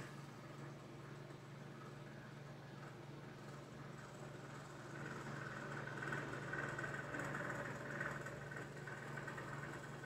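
Faint, steady low hum of room background noise, a little louder in the second half.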